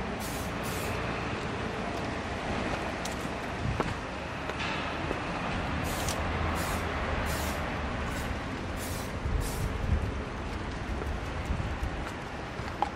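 Aerosol tyre shine sprayed onto a car tyre in short hissing bursts: two quick bursts at the start, then a run of about six more from about six seconds in to about nine and a half. A steady low rumble runs underneath.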